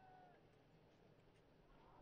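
Near silence: a faint background hush, with a faint, brief wavering high-pitched call right at the start and another near the end.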